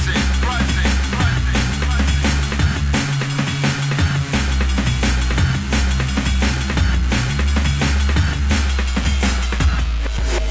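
Drum and bass track playing loud, with a heavy sub-bass line under fast, busy drums; the deep bass cuts out for about a second around three seconds in, then comes back.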